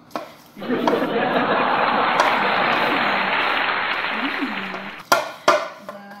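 A loud, steady rushing noise starts abruptly about half a second in and stops suddenly after about four seconds, with a little laughter over it. Two sharp knocks follow near the end.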